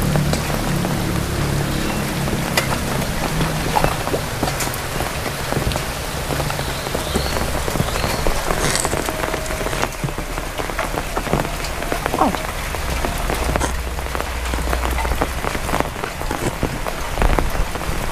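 Heavy rain falling steadily on the ground, puddles and surrounding surfaces.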